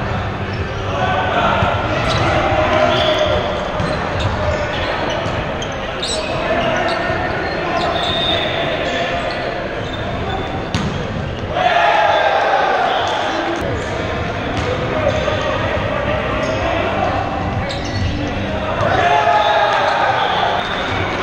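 Volleyball rally in an echoing gymnasium: players shouting calls to each other, with sharp hits of the ball now and then, and a louder burst of shouting about halfway through.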